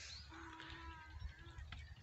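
Faint, quiet farmland ambience with a distant animal call drawn out for about a second.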